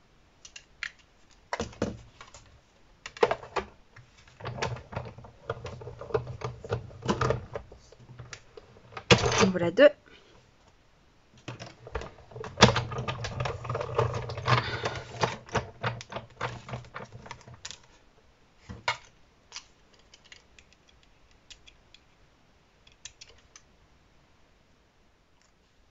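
Close-up tabletop craft handling at a die-cutting machine: rapid clicking, tapping and scraping as small die-cut paper spiders are poked out of black cardstock with a pointed tool and the cutting plates are handled. The sound comes in scattered clicks, with two longer busy stretches in the first and middle parts.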